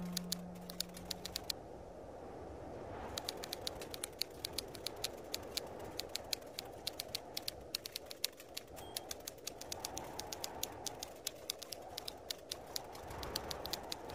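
Typing sound effect: quick, irregular keystroke clicks, a few a second, with a short pause about a second and a half in, over a faint low background hiss.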